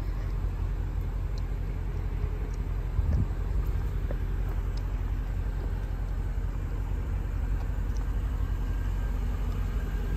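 Steady low rumble of a Mercedes-Benz E550's V8 engine idling, heard from behind the car near its exhaust tips.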